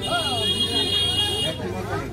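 A vehicle horn sounds one steady high-pitched note for about a second and a half, over background voices.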